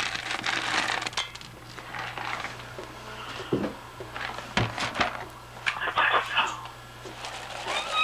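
Rustling and handling noises of cat food being dished up, with a few sharp clicks and knocks around the middle.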